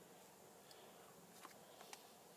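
Near silence, with a few faint light clicks from the plastic clock spring being handled.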